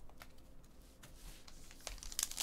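Faint rustling and a few soft clicks from hands handling trading cards and a wrapped card pack.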